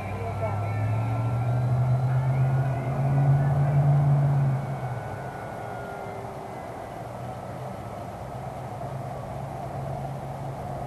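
Electric motor and propeller of an E-flite F4U-4 Corsair 1.2m RC plane running on a 4S battery, a steady buzz that grows louder and slightly higher from about a second in, then falls off sharply about halfway through and carries on more faintly.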